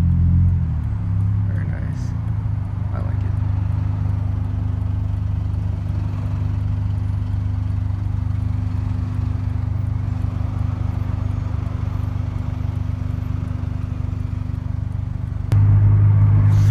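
Honda Accord's engine and road noise heard inside the cabin in slow traffic, a steady low drone. It jumps suddenly louder near the end.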